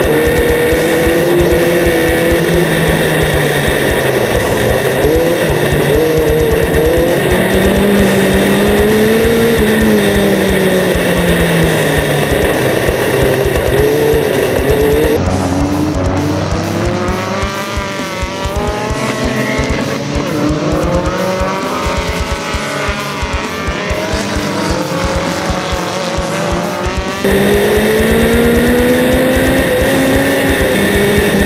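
Dirt-track formula race car engine heard from the cockpit, its pitch rising and falling as the driver accelerates and lifts through the corners. About halfway through the sound switches to several race cars revving past from the trackside for about twelve seconds, then returns to the onboard engine near the end.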